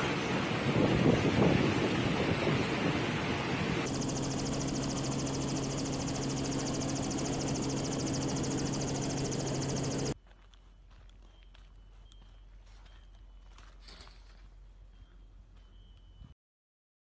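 Hurricane-force wind rushing and buffeting the microphone, loud, for about the first four seconds. Then a steady low drone with hiss until about ten seconds in, when the sound drops suddenly to a much quieter background with faint ticks and a faint high tone.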